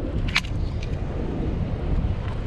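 Wind buffeting the microphone, a steady low rumble, with one short click about half a second in.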